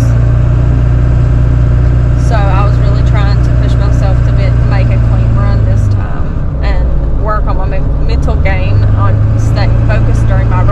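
Engine and road drone heard inside a moving vehicle's cab, a steady low hum that eases off about six seconds in and comes back near the end.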